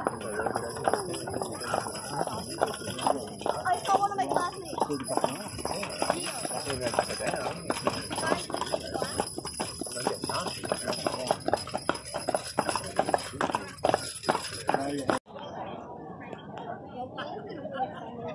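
People talking over a dense run of sharp clicks and clatters, which cut off abruptly near the end, leaving quieter voices.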